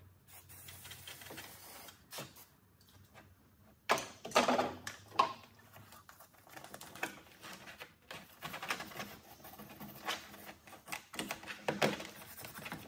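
An aerosol degreaser hisses briefly at the start. Then a toothbrush scrubs a zinc-plated tailgate latch mechanism in a plastic tray, making quick irregular clicks and rattles of metal. A cluster of louder knocks comes about four seconds in.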